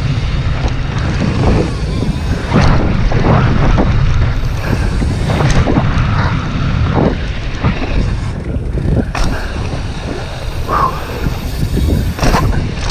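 Wind rushing over a GoPro microphone at riding speed, over the rumble of tyres on a hardpacked dirt and gravel trail, with frequent clacks and rattles from a YT Tues downhill mountain bike.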